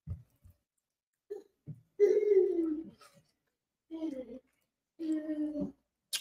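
A person eating hums "mm" three times with her mouth closed, the sound of enjoying the food. Each hum falls in pitch, with a few faint mouth clicks before them.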